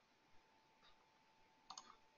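Near silence with a few faint computer mouse clicks: one about a third of a second in, another near the middle, and a quick double click near the end, over a faint steady whine.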